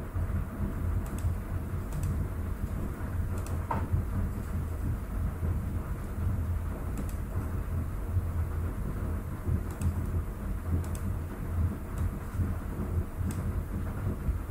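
Steady low background rumble with a few faint, sharp computer-mouse clicks scattered through it.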